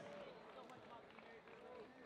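Faint murmur of voices, barely above near silence, with no music or other distinct sound.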